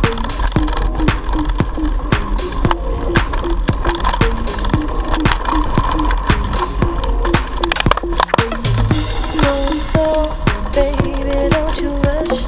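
Background music with a steady beat and pitched melodic notes.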